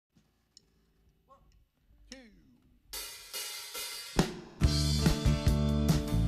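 A few faint noises over near silence for about three seconds, then a live band's drum kit comes in with cymbals, a loud hit a little after four seconds, and the full band playing from about four and a half seconds on.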